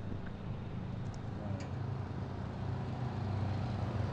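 A steady low hum from a running motor vehicle or road traffic, growing slightly louder toward the end.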